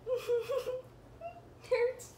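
A girl laughing in short, pitched bursts: a run of them in the first second and a brief one near the end.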